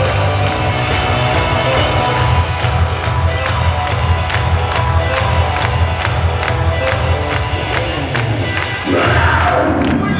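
Arena PA music for a team-entrance hype video, with a heavy bass beat and a fast, steady percussive rhythm, over a crowd. A rising whoosh sweeps up near the end.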